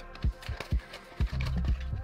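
Plastic blister pack of a Hot Wheels car being torn open by hand: a few sharp separate clicks and crackles in the first second or so, over background music.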